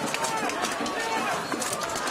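Clatter and clanks of steel weapons striking plate armour in a mass melee, with many voices shouting together.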